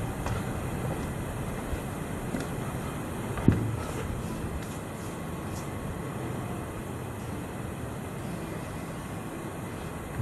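Steady low rumbling background noise, with one sharp knock about three and a half seconds in.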